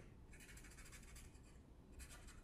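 Faint scratching of a pen drawing on paper, in short strokes with brief pauses.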